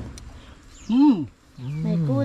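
A man's voice making two drawn-out, wordless vocal sounds with his mouth full as he eats a spoonful of kinilaw. The first rises and then falls in pitch; the second is lower and held.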